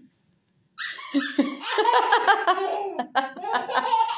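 A four-month-old baby laughing hard: starting about a second in, a long run of high-pitched laughter that breaks into quick, short laughs near the end.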